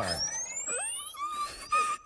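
Comic cartoon sound effect: a thin whistle that rises steadily in pitch for nearly two seconds, with a few short tones in the second half.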